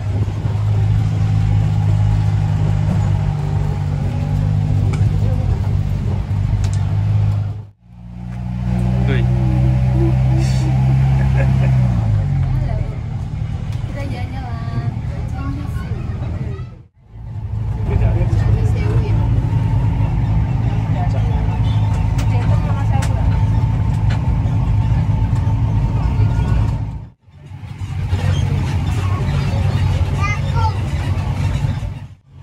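Engine of an open-sided tourist tram running steadily under passengers, its note dropping about twelve seconds in as it slows. The sound breaks off briefly three times, at about 8, 17 and 27 seconds.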